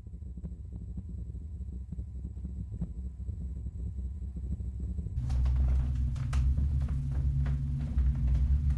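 A low rumbling drone with faint crackles over it, swelling louder about five seconds in.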